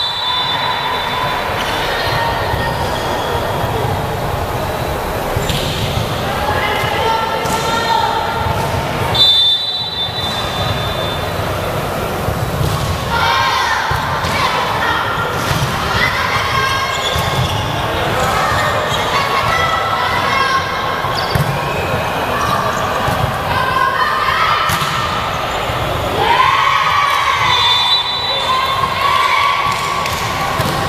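Indoor volleyball play echoing in a sports hall: the ball being struck, players calling out and shouting to each other, and short referee whistle blasts at the start, about a third of the way in and near the end.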